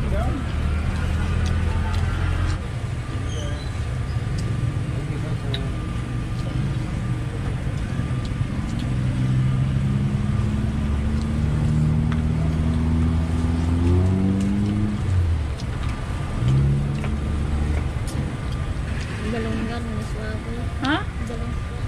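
Road traffic: motor vehicle engines running close by, one rising in pitch as it speeds up past the middle and dropping away, with background chatter.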